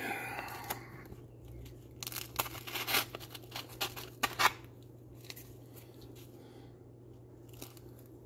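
Pencil scratching on the gritty face of sanding discs as the holes are traced through, with rustling of the stiff paper discs in the hands. Short scratchy strokes come in bunches over the first half, then turn faint and sparse.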